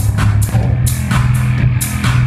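Live band music: a driving drum beat with sharp hits about three times a second over a steady bass line, with no vocals yet.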